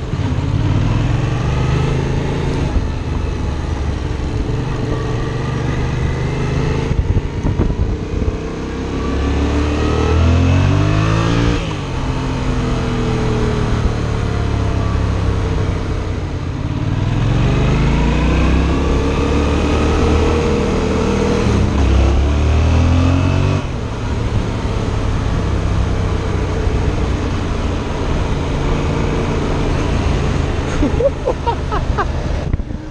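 Yamaha FZ-07's 689 cc parallel-twin engine under way. It pulls up through the revs twice and drops back at each gear change, with stretches of steady cruising in between.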